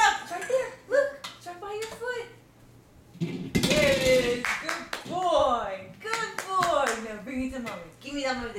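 A toddler babbling in high-pitched wordless bursts, with a louder squeal about three and a half seconds in. A few short sharp taps are heard among the babble.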